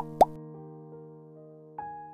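Soft keyboard background music, held notes slowly fading, with two quick rising pop sound effects right at the start and new notes coming in near the end.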